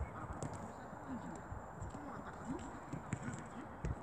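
Faint scattered taps and thuds of boys running and touching footballs as they dribble on artificial turf, with a slightly louder thump near the end.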